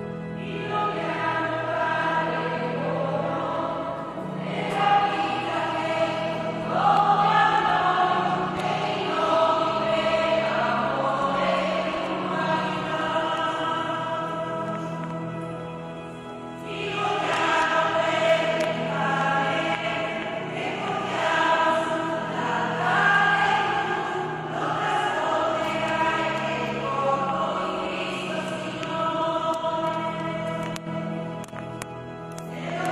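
Church choir singing a hymn over held, sustained keyboard notes. The singing eases off briefly about 16 seconds in, then a new verse begins.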